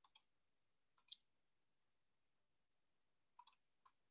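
Near silence broken by three faint clicks of a computer mouse: one at the start, one about a second in, and one near the end.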